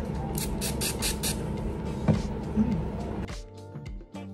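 Pump spray bottle of rose-water facial mist spritzed in a quick run of about five short hisses onto a makeup sponge to dampen it. Background music starts near the end.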